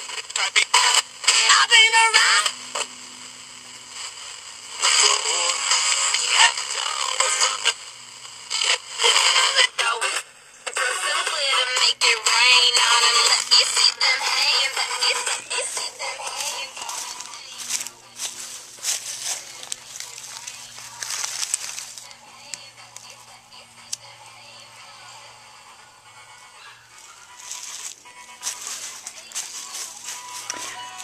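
Music with singing playing from a small portable radio, loud at first and growing fainter from about halfway through.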